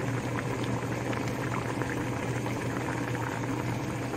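A pot of pork kimchi stew boiling steadily in an open stainless-steel pot, with a low steady hum underneath.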